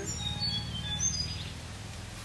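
A bird chirping a quick series of short, high notes at shifting pitches in the first second or so, over a steady low background hum.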